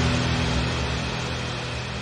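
A sustained low drone fading steadily out: the tail of a film trailer's soundtrack after its final hit.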